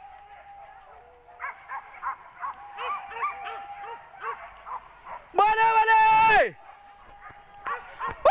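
Boar-hunting dogs yelping and barking in quick short bursts, a dozen or so over about three seconds. About five seconds in a man gives one loud, long, drawn-out shout.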